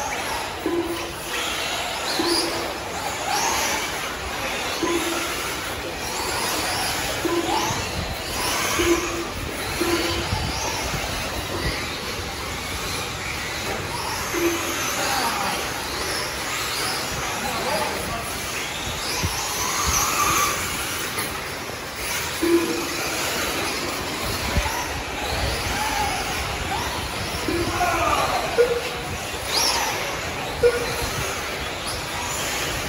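Several electric 1/8-scale RC truggies racing on a dirt track: a mix of high motor whines that rise and fall as the cars accelerate and slow through the corners.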